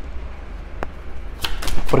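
Tarot cards handled on a wooden table as the deck is picked up: one sharp click about a second in, then a quick run of clicks and flicks near the end, over a low steady hum.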